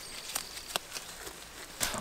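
Goat browsing on weeds, a few sharp crisp snaps as it tears and chews leaves, over a faint high steady insect tone in the first part.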